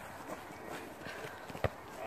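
Faint footsteps on grass and distant voices, then a single sharp thump about one and a half seconds in: a football being kicked.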